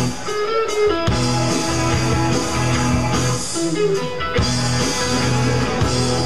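Live rock band playing, with guitar to the fore.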